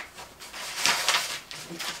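Paper sheets sliding into a plastic zipper bag, rustling and crinkling in several short bursts.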